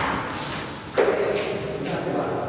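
Table tennis ball hits: a sharp click at the start and a louder one about a second in, each ringing briefly in a large, echoing hall.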